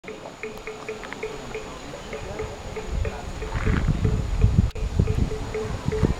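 A steady series of short, evenly spaced pips, about three a second, under a low rumble on the microphone that starts about three seconds in.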